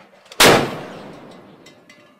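Naval deck gun firing a single round: one sharp blast about half a second in, followed by a rumble that fades away over about a second and a half.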